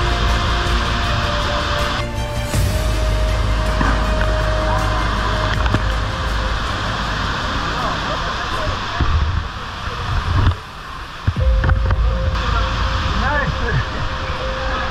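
A powerful waterfall pouring into a churning plunge pool, a steady roar of whitewater, with background music over it. The water sound briefly drops away a little after ten seconds in.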